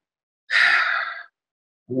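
A man lets out one short, breathy sigh, starting about half a second in and lasting under a second.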